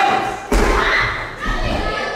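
A heavy thud about half a second in as a wrestler's body is slammed down outside the ring, followed by a second, lower thump around a second and a half in.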